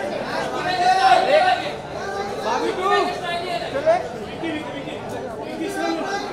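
Overlapping chatter of a group of photographers, several voices calling out and talking over one another.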